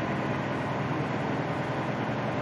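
Semi truck's diesel engine running steadily at low speed with road noise, heard from inside the cab.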